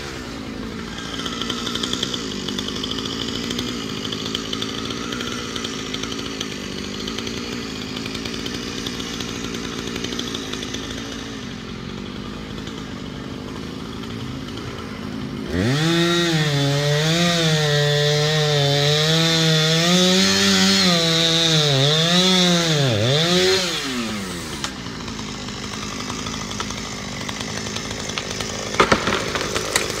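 Chainsaw idling, then revved up about halfway through and cutting through the pine's trunk for about eight seconds, its pitch wavering under load before dropping back to idle; this is the final felling cut behind a hinge. Near the end, sharp cracking of wood as the tree starts to fall.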